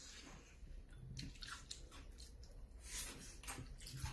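Faint wet chewing and sucking as pieces of lamb spine are gnawed off the bone, with scattered small clicks.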